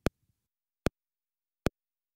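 Metronome click track: three sharp, identical clicks evenly spaced a little under a second apart, a slow steady beat of about 75 a minute setting the tempo before the song.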